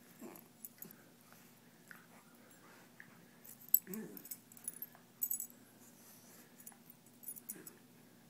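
A Westie and a Cairn terrier wrestling in play, with short growls near the start and about four seconds in. Collar tags jingle in quick clusters through the middle and again near the end.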